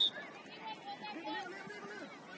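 Distant voices of players and spectators across an outdoor soccer field. A brief, high whistle blast cuts off right at the start.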